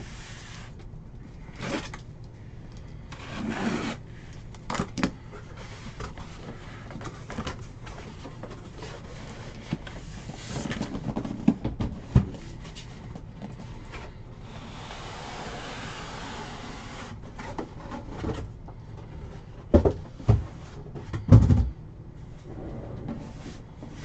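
Cardboard boxes and packaging being handled and opened: scattered rustles, scrapes and light taps, a few seconds of steady rubbing about two thirds of the way through, and a few sharper knocks near the end.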